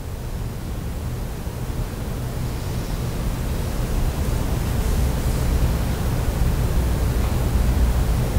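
Steady low hum and hiss of room tone in a quiet church sanctuary, slowly growing louder.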